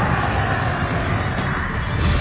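Dramatic anime soundtrack music layered with a sustained energy-blast sound effect and a low rumble, as a huge attack strikes its target.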